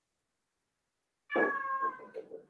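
A domestic cat meowing once, a single drawn-out call starting near the end, its pitch sliding slightly downward as it fades.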